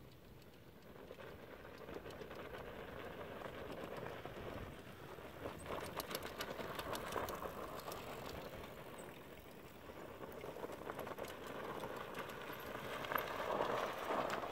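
Rungu Electric Juggernaut electric three-wheeled fat-tyre bike riding over a dirt trail: tyre noise with scattered clicks, growing louder as it comes closer.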